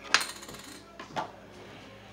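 A Pokémon coin clattering briefly against the cards or table, with a short ring, followed about a second later by a softer tap.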